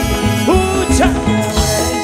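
Live Peruvian cumbia music: a male voice singing over a steady beat of bass and percussion.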